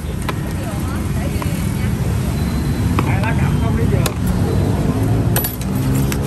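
Steady low rumble of street traffic with indistinct voices, and a few sharp clicks from serving utensils against metal food trays and a foam box.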